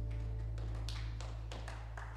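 A low note held steady by the worship band as its song ends, with a few light taps over it.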